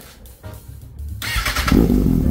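The 2015 Kawasaki Ninja ZX-6R's 636cc inline-four is started with the electric starter. The starter cranks briefly a little over a second in, and the engine catches at once and runs loud and steady through its Two Brothers carbon slip-on exhaust.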